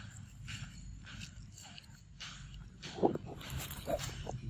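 A macaque eating a ripe mango, with soft wet chewing and smacking about twice a second. About three seconds in comes a short, louder sound, then a brief rustle of leaf litter as a second macaque moves close.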